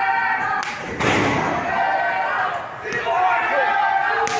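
Voices shouting and calling out through a ringside wrestling brawl, with a sharp impact about a second in from a blow landing between the wrestlers.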